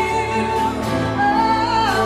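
Live worship music: a held sung note gives way about a second in to a new, higher note that swells into a wide vibrato, over steady instrumental accompaniment.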